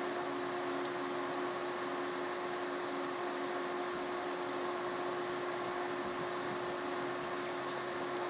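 Steady whir and hum of running bench electronics, like a cooling fan, with a steady low tone that does not change while the input voltage is varied.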